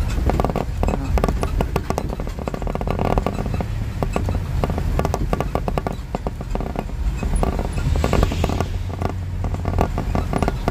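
Steady low road and engine rumble heard from inside a moving vehicle, with frequent irregular rattling clicks and a brief hiss about eight seconds in.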